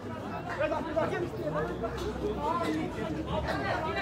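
Men's voices chatting close by, overlapping and indistinct, with no clear words.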